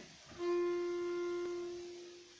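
A single held musical note starts about a third of a second in and slowly fades out. It gives the singer her starting pitch for an unaccompanied folk song.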